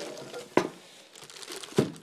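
Plastic packaging crinkling as it is handled, with two sharp knocks a little over a second apart.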